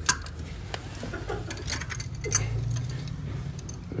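Channel-lock pliers clicking against a toilet closet bolt as it is worked: one sharp click at the start, then a few faint scattered clicks.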